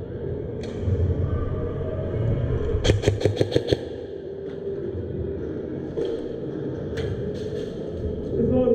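Airsoft electric gun (AEG) firing a rapid burst of about eight shots, a little under a second long, about three seconds in. A few single sharp cracks follow near the end, over a low rumble of the hall.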